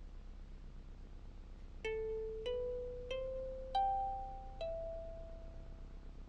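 Soundtrack music: five single plucked notes, starting about two seconds in, each ringing and fading. The pitch steps up over the first four notes and drops on the fifth, over a faint steady hum.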